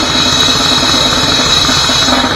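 A grindcore band playing live at full volume, with the drum kit close to the microphone: fast kick and snare strokes under a steady cymbal wash, along with guitar and bass.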